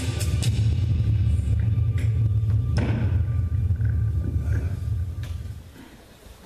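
Live church worship band's final chord held and ringing out through the PA, dominated by a deep sustained bass note that fades away near the end. A single knock sounds about three seconds in.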